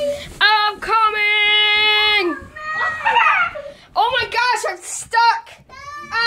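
A young child's voice: one long, steady held cry of almost two seconds, then a string of shorter cries that bend in pitch.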